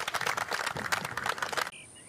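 Spectators applauding a made birdie putt, a dense patter of hand claps that stops abruptly near the end.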